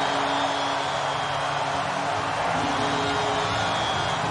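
Large ice hockey arena crowd cheering after a goal, a loud, steady roar of many voices, with faint steady tones underneath.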